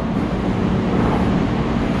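Steady running noise of a Hankyu commuter train standing at the platform with its doors open, its equipment and rooftop air-conditioning units giving a constant hum.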